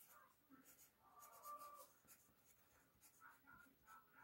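Faint scratching of a colored pencil drawing on paper over a clipboard, in a run of short strokes. A brief faint tone sounds about a second and a half in.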